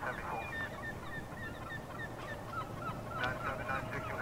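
A bird calling in a quick series of short notes, about three a second, over a steady low rumble.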